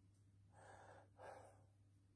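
Near silence with two faint breaths from a man ill with coronavirus, about half a second in and again just after a second in, over a low steady hum.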